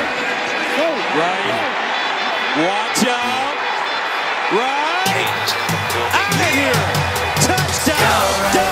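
Football TV broadcast audio of a kickoff return: an excited commentator's voice over stadium crowd noise, mixed with a hip-hop/pop music track. The track's beat and bass come in about five seconds in.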